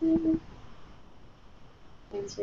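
Quiet room tone in a small room, opening with a brief low hum-like voice sound of about a quarter second.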